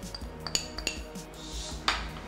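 A steel spoon and a small glass dish clinking and scraping as dried herbs are spooned out, with a few light clinks and the sharpest one near the end.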